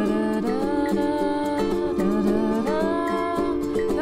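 Background music: plucked strings under a wordless melody line that glides and bends between notes.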